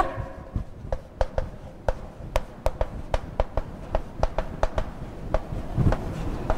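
Chalk writing on a blackboard: an irregular run of sharp taps, several a second, as each letter is struck onto the board.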